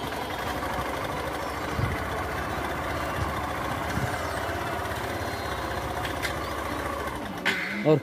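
Small motorcycle-type engine running steadily as the two-wheeler is ridden along, then cut off near the end as it pulls up.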